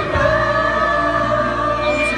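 Several voices singing together over loud amplified music with a steady low bass, the sung notes held and sliding from one to the next.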